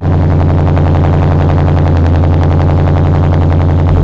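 Car exhaust running steadily, heard right at the tailpipe: loud, with a fast, even pulsing that sets in suddenly and holds at one engine speed.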